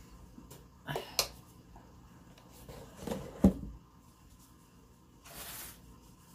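Light taps and knocks from handling things on a cloth-covered table: two small clicks about a second in, a louder knock about three and a half seconds in, and a brief rustle near the end.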